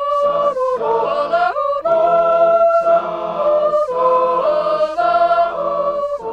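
A trio of women singing a folk song a cappella, voices together on long held notes with short breaks between phrases.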